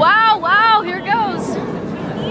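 A high-pitched voice giving three short excited cries, each rising and then falling in pitch, over the murmur of a crowd.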